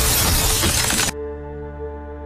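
A glass tabletop shatters under a falling body in a loud crash of breaking glass over film music. It cuts off abruptly about a second in, and soft sustained synth music with held tones follows.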